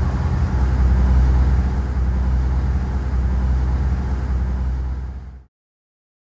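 Steady low drone of the boat's Volvo Penta IPS diesel engines running, with a hiss of wind and water, heard at the helm; it fades out about five seconds in.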